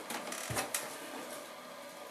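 Product packaging being handled: rustling with a few light clicks and a soft thump about half a second in.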